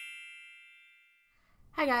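A bright, bell-like chime of several tones ringing out and fading away over about a second and a half, the sound of an intro logo card. A woman's voice begins speaking near the end.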